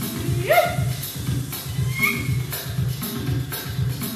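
Belly dance music with a steady drum beat of about two beats a second and sharp high percussive hits. About half a second in a short rising tone stands out above the music, and a brief high tone follows about two seconds in.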